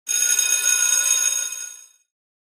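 Electric school bell ringing: a bright, steady metallic ring that starts suddenly, holds for about a second and a half, then fades out.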